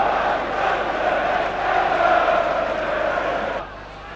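Football stadium crowd chanting, a sustained mass of voices that cuts off suddenly about three and a half seconds in, leaving a quieter crowd background.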